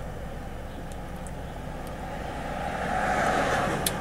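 Steady low hum inside a car's cabin, with a soft rushing sound that swells and fades over the last couple of seconds, and a brief click just before the end.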